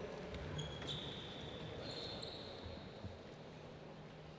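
Faint, irregular thuds on a wooden sports-hall floor, with a thin high squeak that starts about a second in and lasts just over a second.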